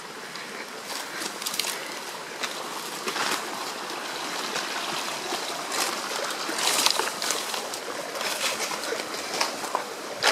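A small stream running and trickling, a steady watery wash, with a few short crackles of footsteps on the brushy trail.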